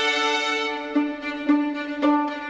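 Recorded classical string music led by a violin: held high notes give way, about a second in, to a repeated lower note played roughly twice a second.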